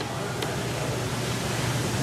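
Steady fan noise, an even rushing hum, with a faint click about half a second in.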